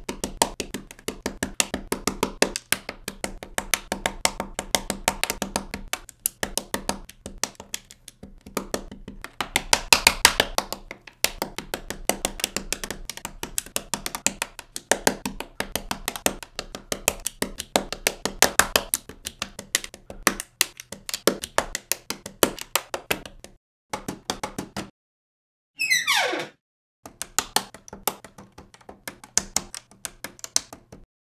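Plastic LEGO bricks clicking and tapping onto a baseplate, many clicks a second in a fast, uneven patter. About 26 seconds in, after a short break, there is a brief sweep falling quickly from very high to mid pitch.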